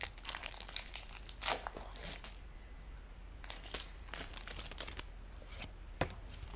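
Faint, scattered crinkles and rustles of a foil Pokémon booster pack wrapper and its trading cards being handled.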